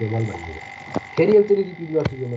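A man's voice talking over a video call, garbled and croaky from a faulty microphone or connection, so the words do not come through clearly. A faint steady high whine runs underneath.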